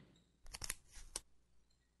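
A preset clicking sound effect playing back from the software's timeline: a short run of sharp clicks about half a second in, ending with one more click just after a second.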